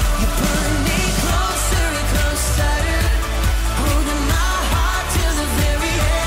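Upbeat pop worship song: singing over a steady beat.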